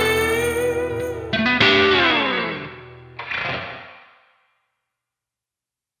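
Electric guitar through effects playing the song's final notes: about a second and a half in, a chord slides down in pitch, and a last chord about three seconds in fades out about a second later.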